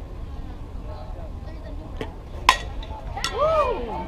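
A softball bat strikes the ball with a single sharp crack about two and a half seconds in, on a hit the game scores as a triple. A spectator's shout rises and falls just after it, over a steady low rumble.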